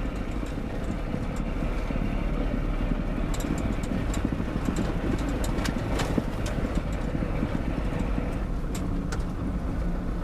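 Isuzu Trooper driving on a rough dirt road, heard from inside the cabin: a steady low rumble of engine and tyres, with scattered short clicks and knocks.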